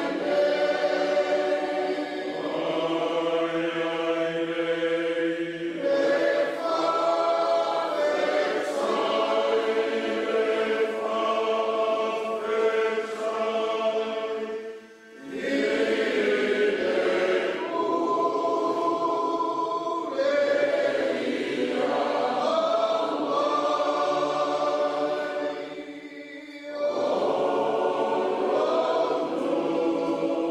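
A choir singing in long held chords, the phrases broken by two short pauses, about halfway through and a few seconds before the end.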